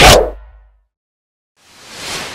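Outro animation sound effects: a loud boom-like hit dies away within about half a second, then after a short silence a soft rushing whoosh swells near the end.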